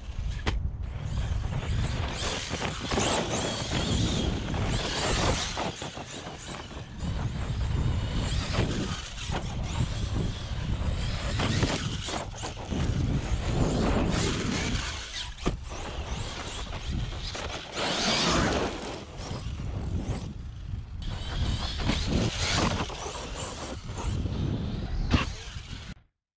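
Arrma Kraton EXB 1/8-scale RC monster truck driving hard on dirt: its motor and tyres surge in repeated bursts of acceleration every few seconds, over a steady rumble of wind on the microphone. A sharp knock comes shortly before the end.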